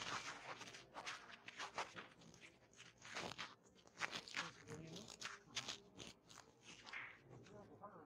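Faint, low voices with scattered short clicks and shuffling noises throughout.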